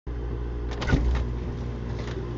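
Refrigerator door pulled open, with a few short clicks and rustles about a second in, over a steady low hum.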